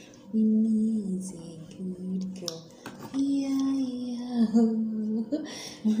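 A woman humming a slow, wordless tune in long held notes that step up and down in pitch, with a couple of brief clicks in the middle and a short laugh at the end.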